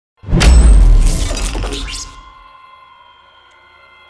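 Logo-intro sound effect: a heavy bass hit with a glass-shattering crash about a quarter second in, more crashes over the next second and a half, then fading into a steady ringing tone.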